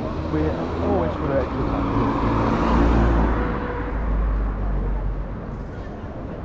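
A car driving past on the street, growing louder to a peak about halfway through and then fading away, with people's voices early on.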